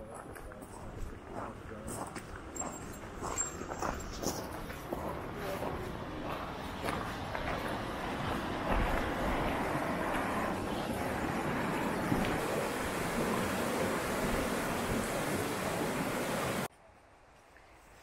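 Footsteps on a gravel trail, then the steady rush of a stream flowing under a wooden footbridge, growing louder and cutting off abruptly near the end.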